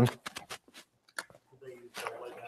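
Small clicks and light rustling of hands handling small gear while searching for a spare battery: a few sharp clicks at first, one more about a second in, then a faint murmured voice near the end.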